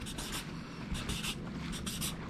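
Red marker pen drawing small fish shapes on a board: a quick series of short strokes.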